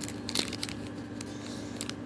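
Faint rustling and crinkling of a foil trading-card booster pack wrapper and cards being handled, with a few short sharp clicks.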